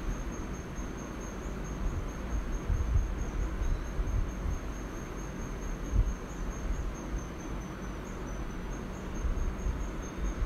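Soft scratching of a Staedtler Mars Lumograph 8B graphite pencil drawing on paper, under a steady high-pitched tone.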